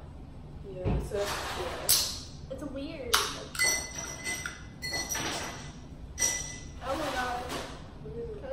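Fingernails picking and flicking at the pull tab of an aluminium KAS lemon soda can: a series of sharp metallic clicks, some with a brief ringing ping, while the tab stays shut.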